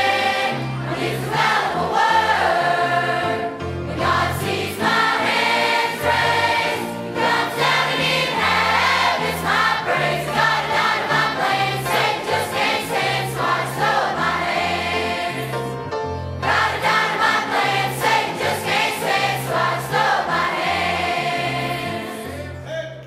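Large youth choir of children and teenagers singing a southern gospel song in unison and harmony, over instrumental accompaniment with a bass line and a steady beat.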